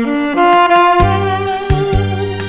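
Alto saxophone playing a slow Korean trot melody in long held notes over a backing track with bass and a drum beat.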